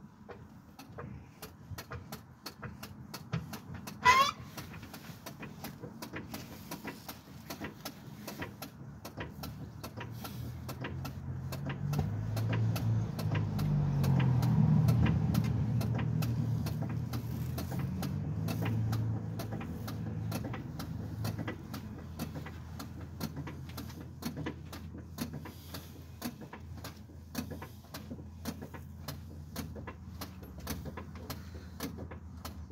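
Irregular clicks and knocks of hand tools on metal while the starter motor is being unbolted, with one brief sharp squeak about four seconds in. Midway a passing vehicle's low rumble swells and fades.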